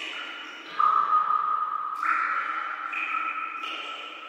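Opening of an electronic music track: held synthesizer tones with no drums, stepping to a new pitch about every second and growing louder about a second in.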